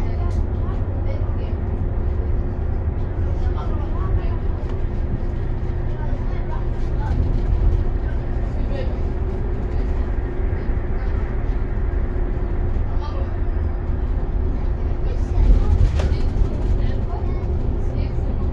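Inside a city bus cruising on a highway: a steady low engine and road rumble with a constant drone, and a brief knock or rattle near the end.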